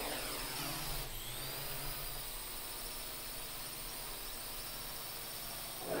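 Hexacopter delivery drone's propellers buzzing in flight: a steady whine over a hiss, its pitch sliding down during the first second.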